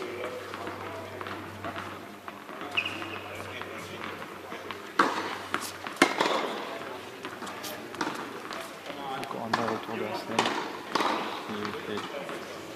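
Indistinct voices of several people talking, with two sharp knocks about five and six seconds in.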